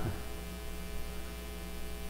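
Steady electrical mains hum, a low even drone, with a brief laugh at the very start.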